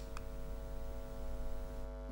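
Steady electrical mains hum on a microphone recording, a buzz of several steady tones at once, beginning with a short click.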